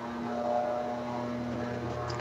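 A steady low mechanical drone with a few held pitches, slightly louder for a moment just after it begins.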